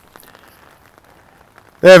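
Faint, light patter of rain with a few soft ticks, then a man's voice starts near the end.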